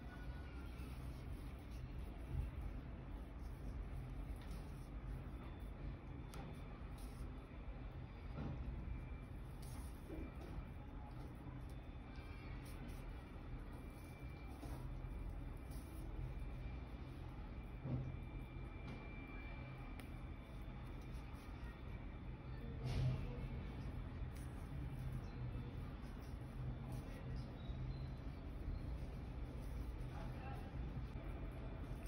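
Steady low background hum, with faint handling sounds and a few soft knocks, the clearest about two-thirds of the way in, as hands draw a needle and cotton yarn through a crocheted bag to sew a cord on.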